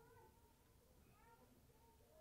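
Near silence, with faint distant voices calling out in short rising and falling cries.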